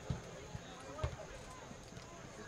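Distant shouts and calls of soccer players and spectators across an open field, with two dull thumps about a second apart.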